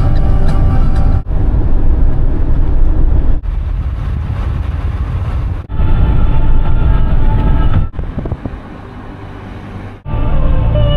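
Road and wind noise of a camper van driving at speed, a loud low rumble. It is cut into short pieces by abrupt breaks every two seconds or so, and the last stretch is quieter.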